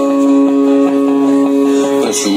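Live band music: a chord held steady for nearly two seconds in an instrumental gap between sung lines, with guitar in the mix.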